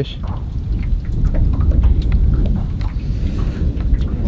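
Wind buffeting the camera microphone: a loud, ragged low rumble, with a few faint ticks over it.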